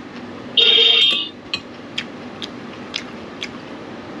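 A metal utensil scraping on a dish once with a brief squeal, then light clicks about every half second.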